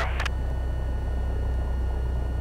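Piper Cherokee's piston engine idling on the ground, a steady low drone with a faint steady whine above it.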